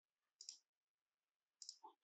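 Faint computer mouse clicks: one about half a second in, and a quick pair near the end, against near silence.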